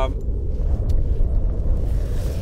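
Wind buffeting the microphone on open ice: a steady low rumble, with one faint click about a second in.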